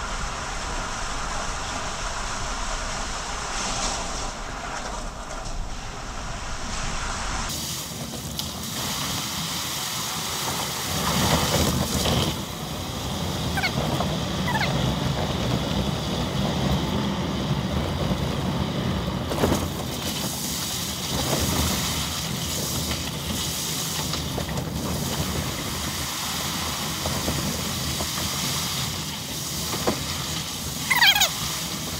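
Jeep Grand Cherokee driving through shallow water on a tunnel floor: a steady rush of tyre and water noise with the engine underneath. The sound changes abruptly about a quarter of the way in, and a few faint high chirps come through in the second half.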